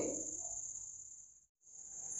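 Crickets' steady high-pitched trill in the background. It fades out about a second and a half in and fades back in near the end at an edit.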